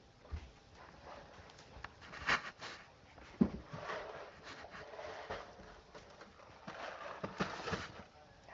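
Cardboard cereal boxes being handled and pushed onto a pantry shelf: rustling and scraping with scattered light knocks, the sharpest about three and a half seconds in.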